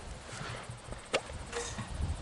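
Rubber siphon hose being fed into a fuel tank's filler neck to start the refuelling: faint handling noises with one sharp click about a second in.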